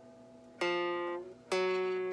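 Two single notes picked on a guitar, about a second apart, each left to ring out.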